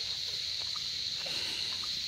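Night chorus of crickets and other insects: one continuous high-pitched trill that holds steady throughout.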